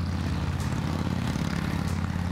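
A steady low engine drone that holds an even level throughout.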